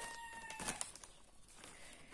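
The faint end of a long, held animal call at one steady pitch, stopping about half a second in, with light rustling of a plastic frozen-peas bag as it is moved; then only faint room sound.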